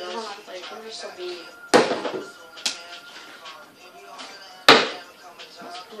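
A plastic water bottle flipped and landing hard on a wooden coffee table twice, two sharp thuds about three seconds apart, the bottle ending on its side.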